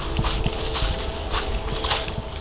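Irregular footsteps swishing and crunching through grass and leaf litter on a woodland trail, a few steps a second.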